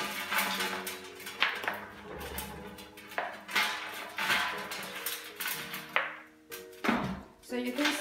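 Thin black plastic nursery pot crackling, with several sharp snaps, as it is squeezed around its sides to loosen the root ball, over background music.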